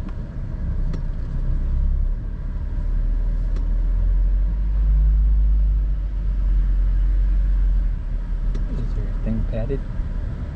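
Car engine and tyre rumble heard inside the cabin as the car moves off. It swells in the middle and eases near the end, with a brief pitched sound just before the end.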